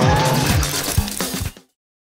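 A short TV bumper jingle of electronic music with deep, falling booms and a water-splash effect. It cuts off abruptly to silence about one and a half seconds in.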